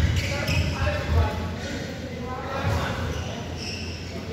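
Badminton play in a large indoor hall: a few short thuds and hits from the court, the loudest right at the start and about a second in, over indistinct voices carrying through the hall.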